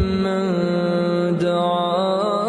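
A man reciting the Quran in Arabic in a melodic chanting style, holding long notes that step and slide between pitches.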